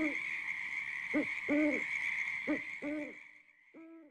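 Owl hooting: a series of low hoots, mostly in short-then-long pairs, with a faint steady high tone beneath.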